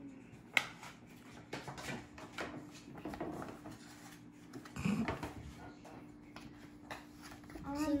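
Old Maid playing cards being handled, drawn and laid down on a wooden table: scattered light taps and clicks, a sharp one about half a second in and a lower thump near the middle, over a faint steady hum and quiet children's voices.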